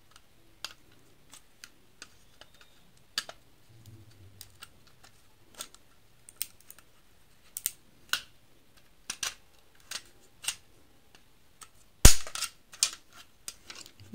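A small screwdriver prying at the plastic cover frame of a modular switch-and-socket plate: scattered sharp plastic clicks and ticks. A loud snap comes about twelve seconds in as the frame pops free, followed by a few more quick clicks.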